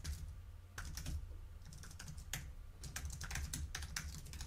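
Typing on a computer keyboard: a run of irregular, fairly quiet key clicks.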